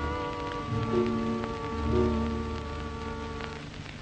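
Soft orchestral film score with long held notes, fading out near the end, over the hiss and occasional crackle of an old film soundtrack.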